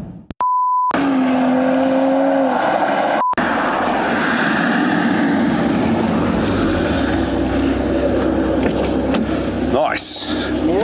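BMW M240i's B58 turbocharged straight-six running while the car is under way, with wind and road noise over it. A short steady beep tone sounds near the start.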